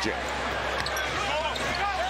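Basketball being dribbled on a hardwood court over the steady noise of an arena crowd, with commentators' voices in the mix.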